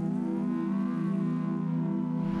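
Ambient background music: a sustained low drone chord held steady, with a faint higher tone gliding up slightly.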